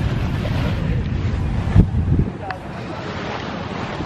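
Wind buffeting the microphone, a low rumbling rush that eases a little after halfway, with a single thump just before it eases.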